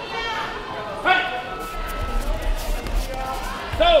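People calling out in a large sports hall, with a loud call about a second in and a short shout near the end.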